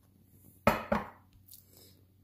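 A sharp knock on a wooden cutting board holding ground pork, about two-thirds of a second in, with a fainter second knock just after.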